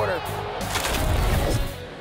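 TV sports broadcast transition music with a crash-like hit in the middle, dying away near the end.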